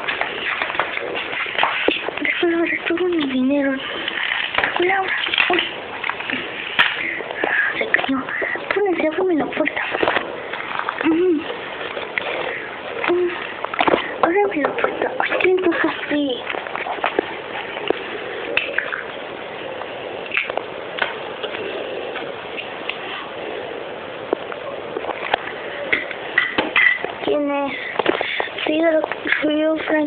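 Indistinct talking that the words can't be made out of, in short stretches with pauses, over a steady background hiss.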